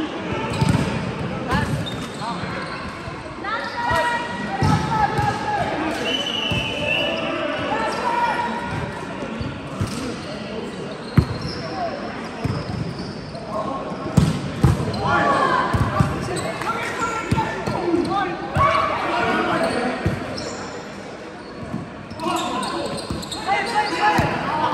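Volleyballs being struck by hands and arms and hitting the floor during rally play, several sharp hits, the loudest about eleven seconds in, with players' voices calling out in a large, echoing sports hall.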